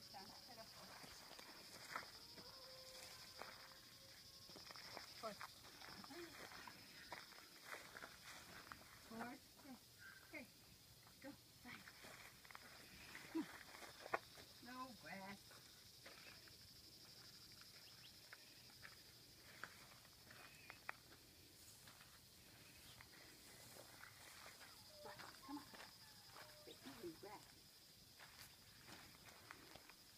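Mostly near silence with a steady faint high-pitched hum, and scattered light footsteps and rustles on dry grass from a person walking a leashed dog, with faint voices now and then.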